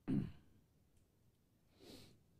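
A person's short sigh or exhale close to the microphone right at the start, followed by a softer breath near the end.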